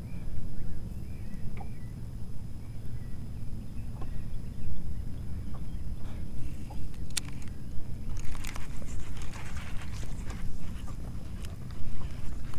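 Steady low rumble with a sharp click about seven seconds in. From about eight seconds comes a quick run of clicking and rattling: a baitcasting reel being cranked to wind a flutter spoon up through the water.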